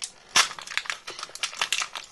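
A thin clear plastic wrapper crinkling in the hands as a small toy stamp ring is unwrapped: a run of quick, sharp crackles, the loudest about half a second in.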